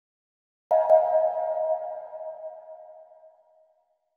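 An opening logo chime: a bright pitched tone struck suddenly, with a second strike a moment later, that rings on and fades away over about three seconds.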